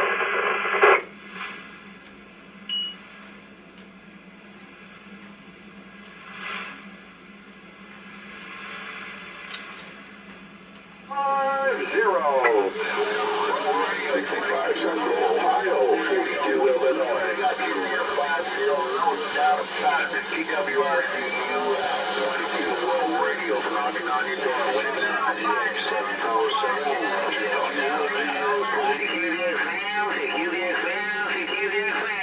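Radio receiver speaker on the 10/11-meter bands: a signal for the first second, then low hiss, then about eleven seconds in loud, garbled chatter of several voices at once that runs on. This is typical of distant stations coming in by skip.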